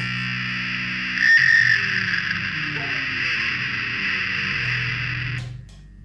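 Sustained, noisy drone of an electric guitar through distortion and effects pedals, with held low notes underneath, a new high tone swelling in about a second in. The whole wash cuts off suddenly near the end as the song finishes.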